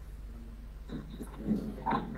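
A pause in speech filled by a steady low electrical hum, with a few faint, short sounds like murmured voice fragments toward the middle and end.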